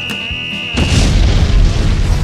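Edited sound effects: a steady high electronic beep for about a second, broken off by a loud explosion sound effect about three-quarters of a second in, over background music.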